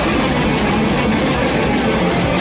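Heavy metal band playing live: distorted electric guitars over bass and drums, loud and dense, with steady cymbal and drum strokes.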